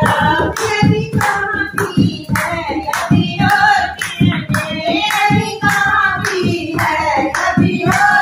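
Women singing together to a dholak played by hand, with a steady beat of about three strokes a second, and hand-clapping along with it.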